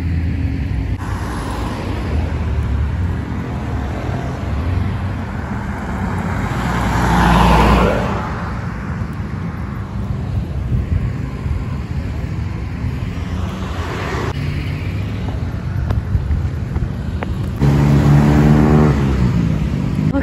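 Road traffic passing close by: a steady rumble of tyres and engines, with a car going past about seven seconds in and another around fourteen seconds. Near the end a vehicle's engine note slides down in pitch as it passes.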